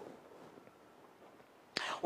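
Near silence, ending in a short intake of breath just before speech resumes.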